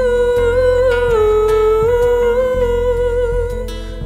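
Live band performance: a female lead voice holds one long wordless note with light vibrato, dipping slightly in pitch about a second in, over acoustic guitar, keyboard and bass.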